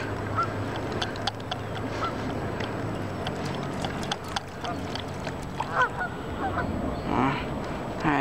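A few short goose honks, spaced out over several seconds, over a steady low hum.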